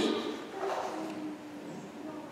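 A man's spoken phrase fading out at the start, then a quiet pause with faint room sound and a faint steady low hum.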